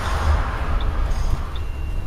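Steady wind and road noise in the open cabin of a Ford Mustang convertible driving with the top down, with a low rumble beneath.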